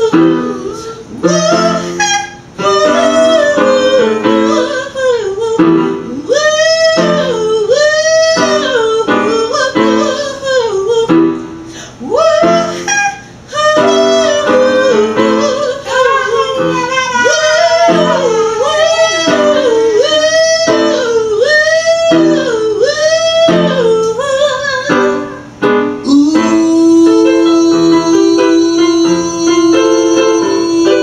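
Gospel song: a singer's voice sweeping up and down in quick, repeated vocal runs over keyboard backing. Near the end a long steady note is held.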